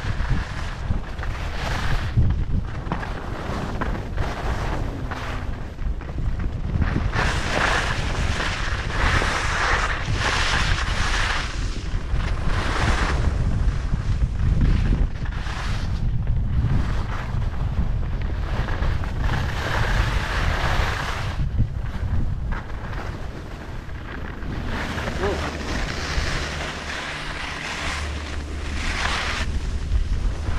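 Wind buffeting the microphone of a camera carried by a skier moving downhill, under the hiss and scrape of skis on packed snow that swells and fades with the turns.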